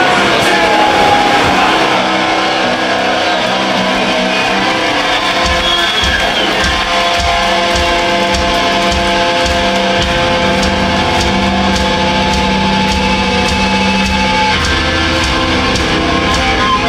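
Heavy metal band playing live, with electric guitars and drums. The drums' steady low beat comes in about five seconds in, under sustained guitar chords.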